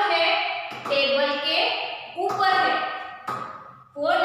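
Speech only: a woman talking in short phrases with brief pauses.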